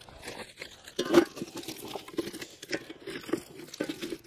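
Dry wooden sticks knocking and scraping together as kindling is laid onto logs in a steel fire bowl, in a run of small clatters with one louder knock about a second in.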